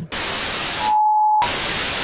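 Television-style static hiss, broken about a second in by a short steady beep, then static again: an editing transition effect of an old TV switching off.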